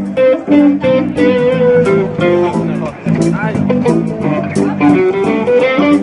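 Band music without singing: a guitar plays a melody of held, stepping notes over a bass line and a steady drum beat.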